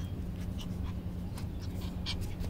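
A young puppy giving several short, faint yips over a steady low background hum.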